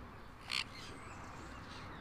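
A parrot gives one short, sharp call about half a second in, over faint chirping from other birds.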